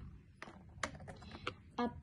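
A few light clicks and taps of small plastic toy food, a toy carrot, being set onto a miniature toy shelf stand.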